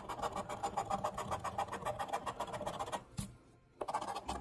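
A coin scraping the scratch-off coating from a lottery ticket in quick, even strokes, about eight a second. It stops for under a second about three seconds in, then starts again.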